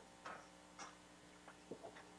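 Near silence: faint steady room hum in a lecture hall's sound system, with a few faint ticks.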